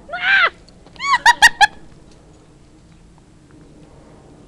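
A dog giving one whiny, rising-and-falling yelp, then about a second in a quick run of four short, high barks, excited and asking for more of the branch game.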